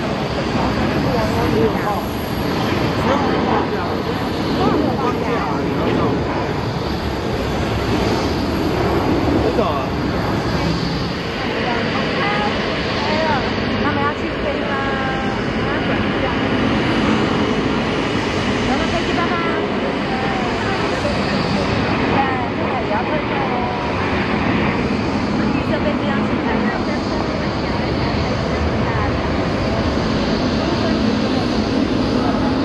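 Jet airliner engines at takeoff power, a steady loud rumble and hiss: first an Airbus A320 lifting off, then an Airbus A330 on its takeoff roll and climb. People's voices are heard over the engine noise.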